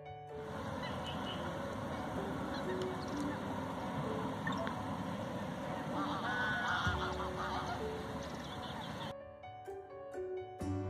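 A dense chorus of many waterbirds calling at once, with goose honking among them; it cuts off abruptly about nine seconds in. Faint background music runs underneath.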